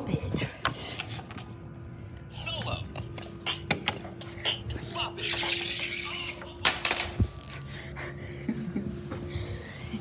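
Electronic sounds from a Bop It handheld toy lying on a hard floor: a steady held tone with scattered sharp clicks and knocks, and a loud hissing burst about five seconds in.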